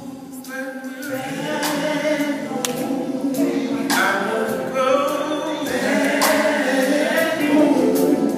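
Male gospel vocal group singing live in harmony, a lead voice over the backing singers, growing louder over the first few seconds.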